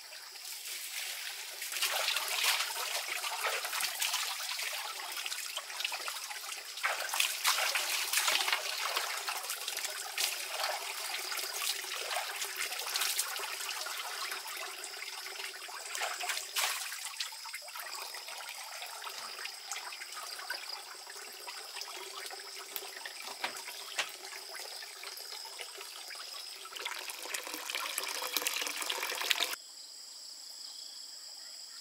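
Running water trickling and splashing, with irregular louder splashes throughout; it cuts off suddenly near the end.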